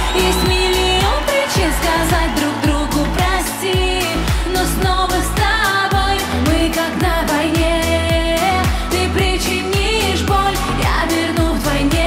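Dance-pop song with a steady driving beat and synthesizers, with a woman's voice singing over it.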